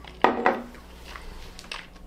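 A whisky glass set down on a wooden bar top: one sharp knock about a quarter second in, followed by a few faint small taps.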